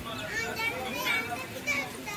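A crowd of people talking over one another, several voices at once, some of them high-pitched.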